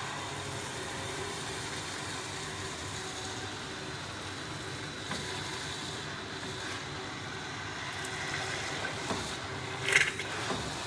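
Bamix immersion blender running steadily at high speed, its blade emulsifying oil, whole egg and mustard into mayonnaise. The motor keeps an even whine for about ten seconds and gets a little louder near the end.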